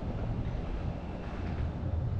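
Low, steady rumble of wind buffeting the microphone, with a faint haze of outdoor background noise and no distinct events.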